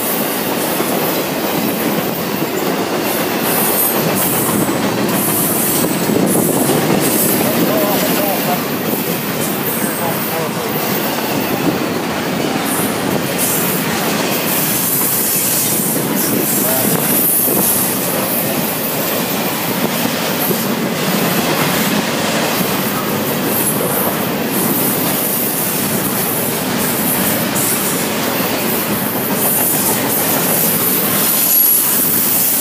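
Intermodal freight train's double-stack container cars and trailer flatcars rolling past steadily: continuous wheel and rail noise with rattling cars, and intermittent high-pitched squeals.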